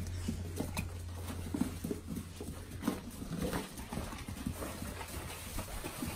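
Animals moving about, with scattered soft knocks and taps and short low sounds over a steady low hum.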